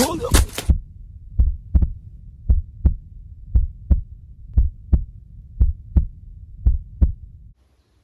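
Heartbeat sound effect: slow, evenly spaced pairs of deep lub-dub thumps, about one pair a second, stopping shortly before the end. A burst of hiss sits over the first beats and cuts off within the first second.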